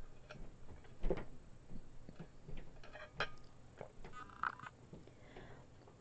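Faint sipping and swallowing through a straw from a lidded tumbler, with small irregular clicks and a couple of brief squeaky sips.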